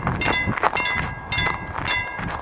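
An old-style Ericsson level-crossing warning bell ringing in quick, uneven strokes. Under it, the low rumble of a passing intercity train fades away about halfway through.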